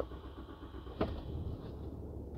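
A 2023 Ram 2500's 6.7-liter Cummins turbo-diesel starting up and settling into a steady low idle, heard from inside the cab, with a single knock about a second in.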